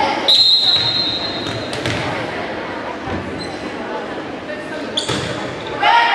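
Volleyball referee's whistle, one steady high blast of about a second and a half, signalling the serve, over crowd chatter in a large gym. Near the end a volleyball is struck with a sharp smack.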